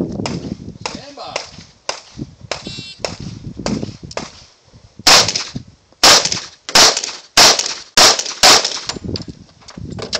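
Handgun fired in a string of shots during a practical shooting stage. A series of quieter cracks comes first, then six loud shots a little over half a second apart in the second half.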